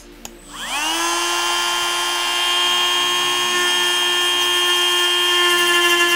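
TACKLIFE RTD02DC 8V cordless rotary tool clicking on and spinning up in about half a second to a steady high whine. The bit is then held against a plastic piece to cut it, and the sound grows slightly louder near the end.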